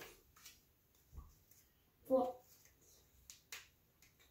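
Flashcards clicking and snapping as they are pulled off a hand-held deck: a few sharp clicks, two close together near the end, with a soft thump after a second and a short vocal sound about two seconds in.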